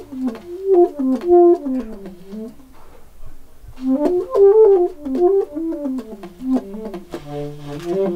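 Alto saxophone playing two quick melodic phrases with a short pause between them, ending on a few held notes.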